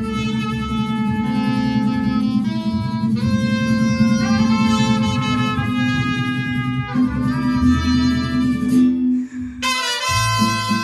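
Mariachi band playing: a melody of held notes over a steady bass line, with a brief break near the end before the next phrase starts.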